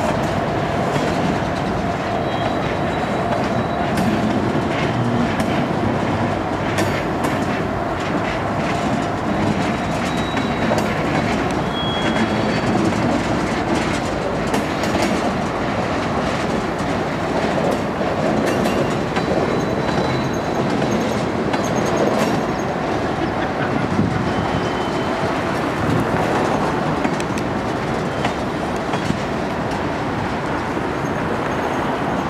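Freight cars of a manifest train (centerbeam flatcars and tank cars) rolling past at steady speed: a continuous rumble of steel wheels with clickety-clack over the rail joints and a few brief high squeals from the wheels.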